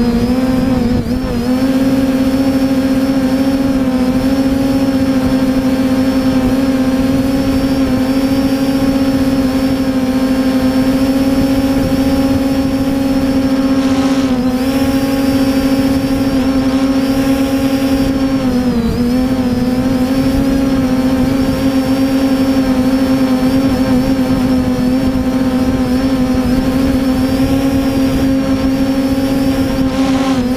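3DR Iris+ quadcopter's electric motors and propellers humming steadily in flight, heard close up from the camera on the drone. The pitch dips briefly about a second in and again around 19 seconds.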